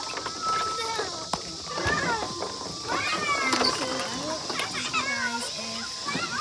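Children playing at a playground: several kids' voices calling and chattering in short high-pitched bursts, over a steady high hiss.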